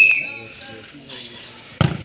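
A short, loud referee's whistle blast at the start signals the penalty, followed by low crowd chatter; near the end comes a single sharp thud as a bare foot kicks the football.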